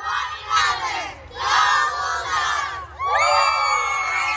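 A group of children shouting together in short bursts, then breaking into a loud, rising cheer about three seconds in as they jump with arms raised.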